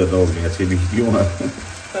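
Lachha paratha frying in a non-stick pan, with ghee sizzling as it is dabbed and spread over the hot paratha.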